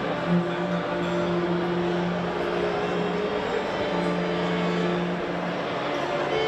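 A string ensemble of violins, violas and cello playing, with long held low notes under the upper parts.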